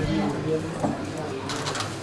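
Low, soft voice sounds, quieter than the talk around them, mostly in the first part and again faintly near the end.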